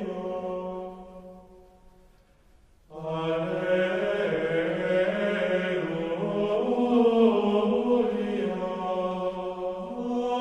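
Slow vocal chant on long held notes with no clear words. It fades away about a second in to a brief near-silence, then starts again about three seconds in and carries on.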